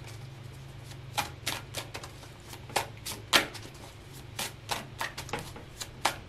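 A tarot deck being shuffled by hand: a run of irregular soft card snaps and slaps, the sharpest a little past halfway.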